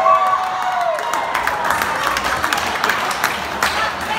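Banquet-hall crowd cheering and clapping: drawn-out whoops at the start give way to a run of scattered hand claps.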